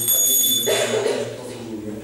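A brief high-pitched metallic ring, like a small bell, starting suddenly and lasting under a second, followed by a short noisy clatter.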